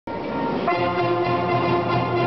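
A symphonic wind band of brass, clarinets, flutes and sousaphone playing held chords; a fuller, louder chord comes in under a second in.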